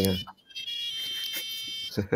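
Tinny electronic melody of single beeped notes stepping from pitch to pitch, played by the micro:bit in a papercraft mosque kit after its song button is pressed; the tune is a Hari Raya song.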